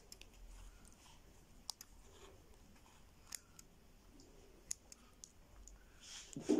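Faint, sparse clicks and light scraping as a small blade cuts open a soft baked bread roll, a few sharp ticks spread out over near silence.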